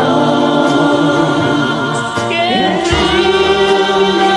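Voices singing in harmony over a karaoke backing track.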